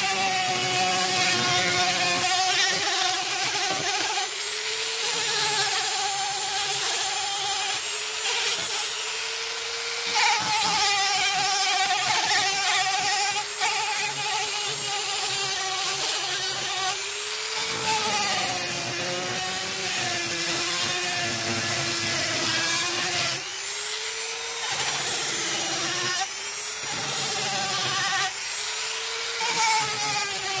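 Small handheld rotary tool fitted with a sandpaper flap wheel, sanding the recesses of a wood carving. Its motor gives a steady high whine over a rasping hiss, and the pitch dips briefly several times in the second half as the wheel is pressed into the wood.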